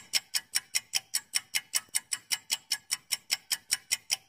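Clock-ticking sound effect of a quiz countdown timer: sharp, even ticks, about five a second, marking the answer time running down.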